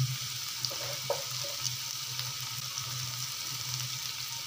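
Hot oil sizzling in a nonstick pot as small bits of food fry in it: a steady hiss with a few faint crackles, over a low steady hum.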